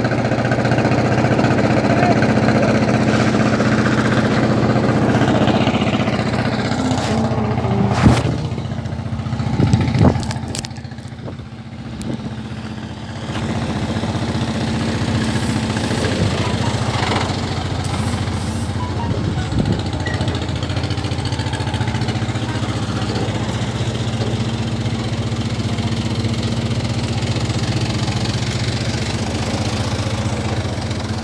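An engine idling steadily, with two sharp knocks about eight and ten seconds in and a brief dip in loudness just after.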